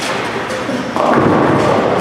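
Bowling ball striking ten-pins about a second in: a sudden crash and clatter of pins lasting about a second, over the steady din of a bowling alley.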